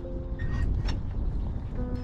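Background music of held notes that change every second or so, over a steady low rumble with a few faint clicks.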